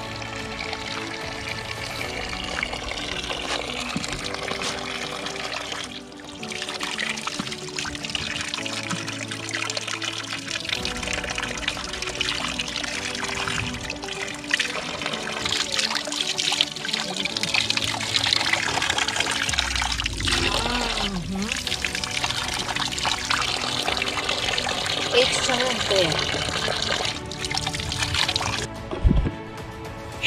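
Background music over water running and trickling from a spring, at an even level.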